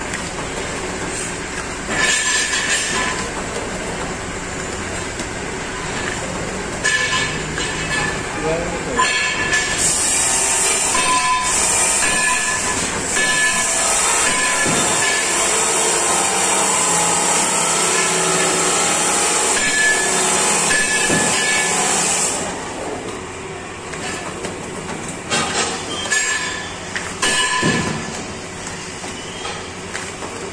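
Paper dona (bowl) making machine running, its press die repeatedly coming down to punch and form silver-laminated paper bowls with a steady mechanical clatter. A loud hiss joins in from about ten seconds in and stops suddenly a little past twenty-two seconds.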